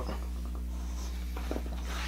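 Quiet room tone with a steady low hum and a few faint soft ticks about one and a half seconds in.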